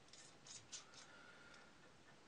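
Near silence, with a few faint light clicks from a small threaded end cap being screwed by hand into a bicycle platform pedal's aluminium body.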